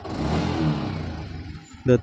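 A motorcycle engine running, rising to a brief swell and then fading back, with a steady low pulse underneath.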